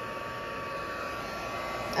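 Embossing heat tool running: a steady fan whoosh with a thin, constant whine, as it warms up.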